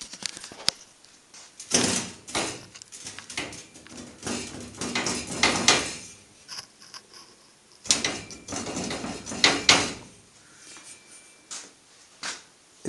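Irregular scraping and rustling noises with a few sharp clicks, like things being handled and shifted close by, coming in several bursts about two, five and nine seconds in.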